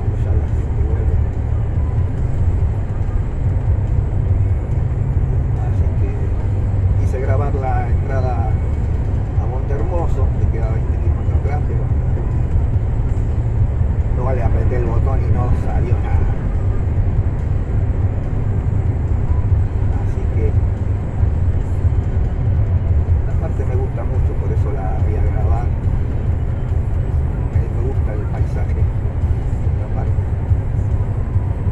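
Steady low engine and road rumble inside a truck cab cruising at highway speed, with voices heard faintly at a few moments.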